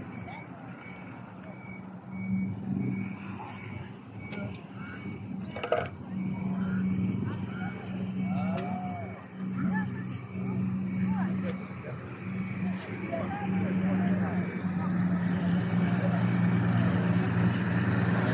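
A vehicle engine running with a steady low hum that grows louder over the last few seconds, under faint background voices and a faint regular high-pitched beeping in the first half.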